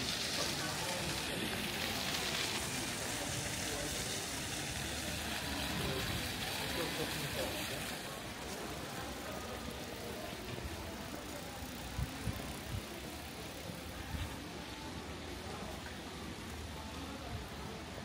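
Pedestrian street ambience: passers-by talking and a steady background hiss, stronger for the first eight seconds or so, with a couple of short knocks later on.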